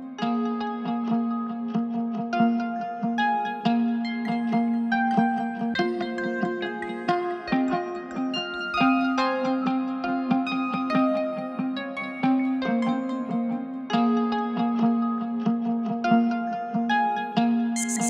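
Trap beat intro: a melodic guitar line of plucked notes over a sustained low note, with no drums or bass underneath.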